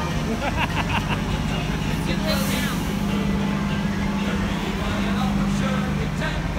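Steady low hum of transit buses idling at a bus station, with a brief hiss about two seconds in and scattered voices.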